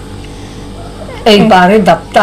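Conversational speech: a short pause with a faint steady low hum, then a woman's voice speaking loudly from about a second and a quarter in.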